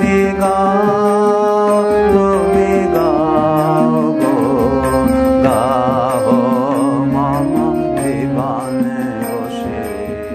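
Closing passage of a Bengali devotional song in Indian classical style: sustained melodic lines, some with wide vibrato, over a steady accompaniment, beginning to fade out near the end.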